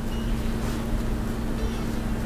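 Steady low mechanical hum holding one constant pitch, from a running machine.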